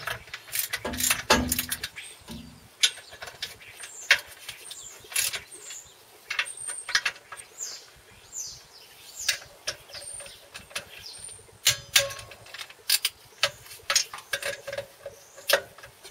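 Socket ratchet clicking in short irregular runs, with metal tools tapping and clinking, as the clutch cover bolts are tightened down one after another.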